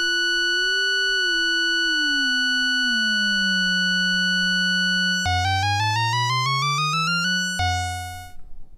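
Moog Werkstatt-01 analog synthesizer holding a steady note while a second, lower tone, its LFO patched in as a second oscillator, glides down in pitch in small steps and then holds as the tuning potentiometer is turned. About five seconds in, the lower tone drops out and a buzzy tone sweeps upward for about two seconds before the steady sound returns.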